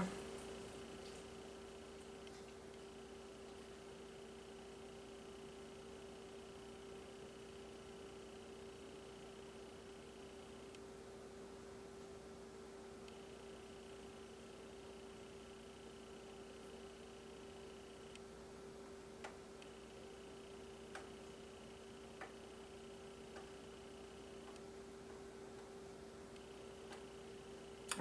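Quiet room tone: a steady low hum with a faint high tone that switches on and off, and a few faint clicks in the second half.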